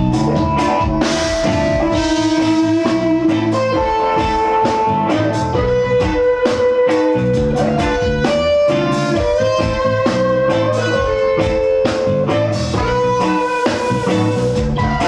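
Live rock band playing an instrumental passage: electric guitar holding long notes that step from pitch to pitch, over a steady drum kit and bass guitar.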